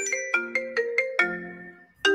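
Mobile phone ringing: a ringtone melody of short, ringing notes, about five a second, fading away near the end.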